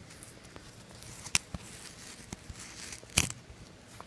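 A sticker seal being peeled slowly off a paper mail package by hand: faint paper rustling with a few sharp clicks, the loudest about three seconds in.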